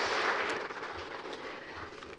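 Audience applause, fading away over the two seconds.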